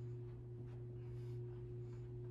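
A faint steady low hum with a fainter higher tone above it. A few brief soft hisses come around the middle.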